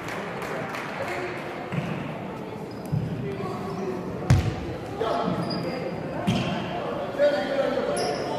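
A basketball bounced on a wooden sports-hall floor: about six separate thumps a second or so apart, the sharpest about four seconds in, echoing in the large hall over background voices.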